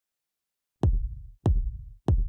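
Electronic music starting: two deep bass-drum hits about two-thirds of a second apart, each with a low booming decay.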